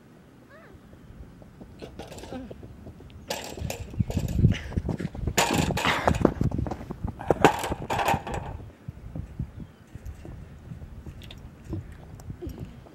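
A runner's quick footfalls on a rubber track, growing louder as he comes close and passes, loudest from about four to eight seconds in.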